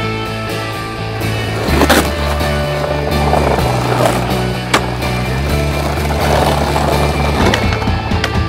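Skateboard wheels rolling over tile and brick paving, with two sharp knocks of the board, about two seconds in and near the five-second mark, over background music with a steady bass line.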